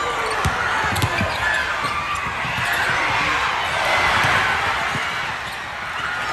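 A basketball being dribbled on a hardwood gym floor, a quick run of bounces about a second in and a few more later, over the steady noise of a crowd of spectators.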